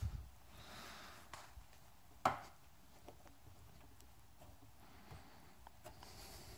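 Faint handling of small metal parts, with one sharp click about two seconds in, as a metal retaining clip is pushed onto a new door lock cylinder.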